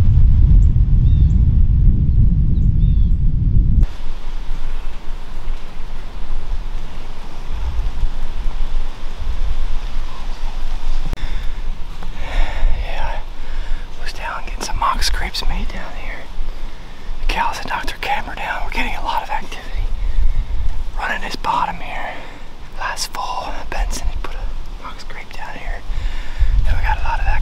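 Low rumble of wind buffeting the microphone for about four seconds, cutting off suddenly; then a faint steady hiss of outdoor air, with quiet whispered speech in bursts from about twelve seconds in.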